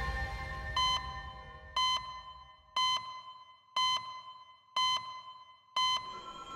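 Electronic beep sounding once a second, six times, each short and on one pitch, as background music fades out at the start. It is the ticking-clock sound effect that runs under the on-screen time display.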